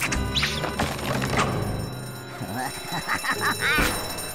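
Cartoon soundtrack: background music with action sound effects, a thud at the start and a sharp hit a little before the end, and a voice coming in over the second half.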